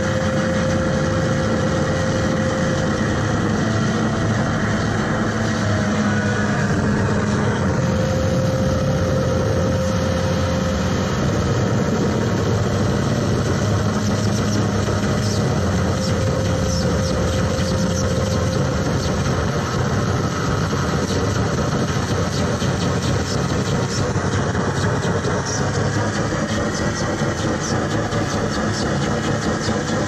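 Live noise music from electronics and effects pedals: a dense, steady rumbling drone with a few held tones and two slow sweeping glides in pitch.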